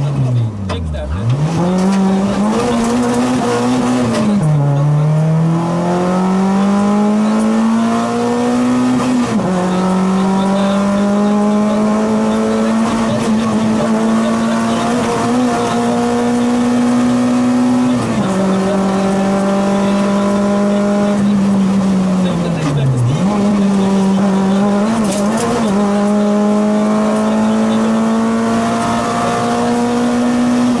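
Citroën Saxo rally car's engine at full throttle, heard inside the cockpit: the revs climb steadily in each gear, with upshifts about nine and eighteen seconds in. The revs dip sharply and pick up again about a second in, at about four seconds and again about twenty-three seconds in, as the driver lifts or brakes for bends.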